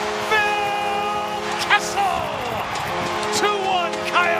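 Arena goal horn blaring a steady low chord to signal a home-team goal, breaking off briefly about two and a half seconds in and then sounding again. Under it a crowd cheers, with high gliding shouts over the top.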